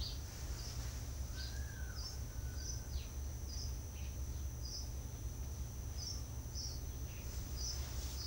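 Steady low hum of background noise, with faint short high-pitched chirps coming one or two a second.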